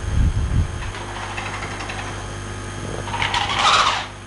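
Handling noise on a headset microphone as the wearer moves: low thumps in the first second, then rustling that grows louder near the end, over a steady mains hum.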